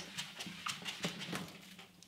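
Whiteboard eraser rubbing across a whiteboard: a quick series of short, faint scrapes.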